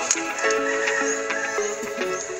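Background music: an instrumental melody of held notes that change every half second or so.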